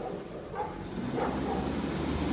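Low, steady diesel engine rumble of a garbage truck approaching along the street, growing louder about a second in.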